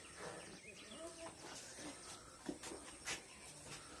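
Quiet open-air ambience with a faint call or two early on and a few soft clicks.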